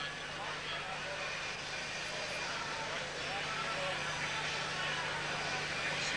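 Arena crowd noise at a boxing match: a steady din of many voices, slowly growing a little louder, over a low steady hum.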